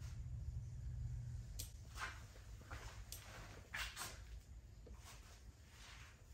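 Quiet room: a faint, steady low hum with a few soft, short clicks scattered through the first four seconds.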